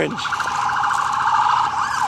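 Electronic siren sounding: a fast-pulsing warble held on one pitch, switching near the end to a quick rising-and-falling yelp.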